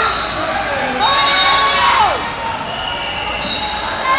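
Din of a busy wrestling tournament hall: steady high whistle tones about a second in and near the end, and a held squeal-like tone that drops sharply in pitch around two seconds in, over voices echoing around the hall.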